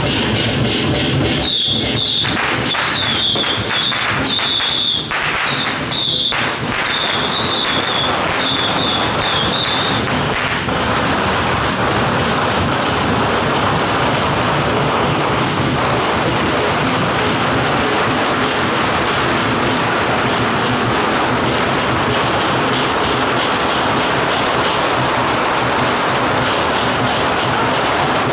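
A long string of firecrackers going off in a continuous, dense crackle. A high shrill tone sounds in short bursts through the first third.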